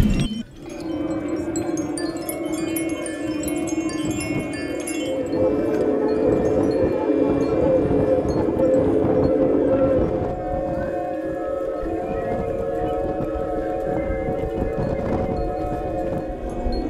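Wind sounding tall slotted pipes of an outdoor wind-instrument installation: several steady, overlapping tones like a held organ chord, with faint high tinkling in the first few seconds. The chord swells from about five seconds in and shifts slightly around ten seconds.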